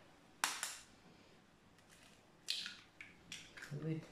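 A raw egg tapped against the rim of a stainless steel mixing bowl and cracked open: a sharp tap about half a second in, then a short run of clicks about two and a half seconds in.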